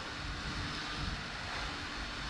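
Steady background noise, a low rumble with hiss and no distinct sounds standing out.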